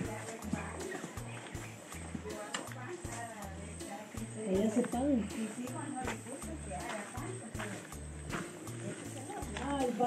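Background music with a steady bass beat, under faint voices.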